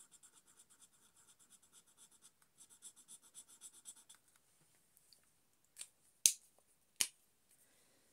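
A marker pen's nib rubbing on paper in quick back-and-forth strokes, about eight a second, colouring in. The strokes come in two runs and stop about four seconds in. A few sharp clicks follow from the marker and its cap being handled, the loudest about six seconds in.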